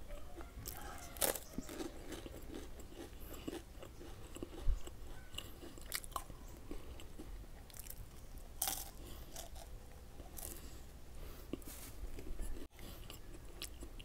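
Crisp rolled wafer sticks with a cream filling bitten and chewed close to the microphone: irregular small crunches, with louder bites about a second in, near five seconds and near nine seconds.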